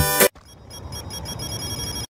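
Loud dance music breaks off a moment in, giving way to a quieter, high electronic trill like a phone ringtone that slowly grows louder. It is a transition effect between songs in a dance-music medley.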